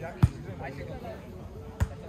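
Two sharp smacks of a volleyball being hit by players during a rally, about a second and a half apart.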